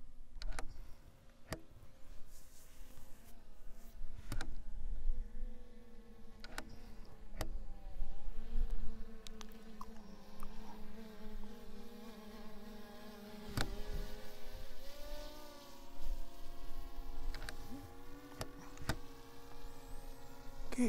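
DJI Mini 3 Pro quadcopter's propellers buzzing in flight, the pitch rising and falling as the drone changes speed, over a low rumble, with a few sharp clicks.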